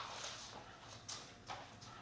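Faint, irregular footsteps and shuffling on the floor, with a few sharp steps: one at the start, then two more about a second and a second and a half in.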